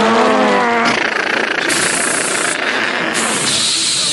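A man imitating vehicle noise with his voice into a microphone, as of fire engines racing to a blaze. A short pitched vocal tone opens it, then about a second in it turns into a harsh, noisy engine-like rush with hissing that cuts in and out.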